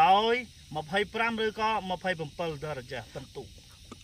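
A person speaking, with short pauses between phrases.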